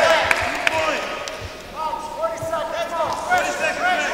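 Several people shouting over one another, as coaches and spectators call out during a grappling match, with a few dull thumps and sharp knocks, the loudest near the start.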